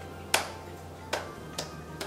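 Three sharp claps of glue-covered hands, the first just after the start and two more about a second in, over steady upbeat background music.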